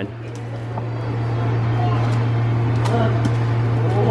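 A steady low hum, with a few faint clicks and rustles of plastic-wrapped plastic cups being handled on a counter.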